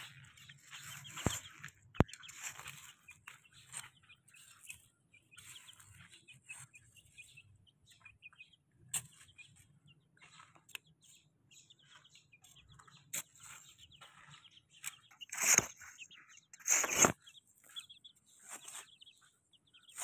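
Young chicks pecking and scratching in loose dirt, with scattered scratching and rustling sounds, faint short peeps and a few sharp clicks. Two louder rustling bursts come about three-quarters of the way through.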